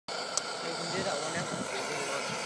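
Optimus 8R petrol stove burner running with a steady rushing hiss under a moka pot, with a sharp metallic click about a third of a second in as the pot's lid is handled. Faint voices sit behind it.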